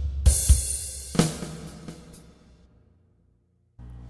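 Korg Pa600 arranger keyboard playing the closing bars of a style's basic intro: drum hits with a cymbal crash about a quarter second in, and a further hit with a low bass note about a second in. The sound then rings out and dies away to silence.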